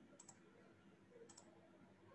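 Near silence broken by two faint double clicks about a second apart: a computer mouse button pressed and released while choosing a drawing tool and colour.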